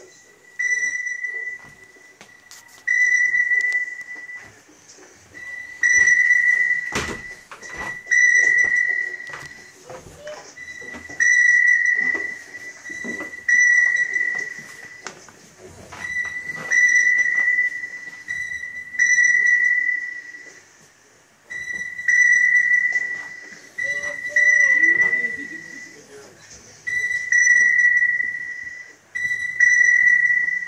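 Shipboard signal tone beeping at one steady high pitch, a long beep about every two and a half seconds. This is the crew signal that sounds faster in time of danger to call the crew to action. A single sharp knock cuts in about seven seconds in.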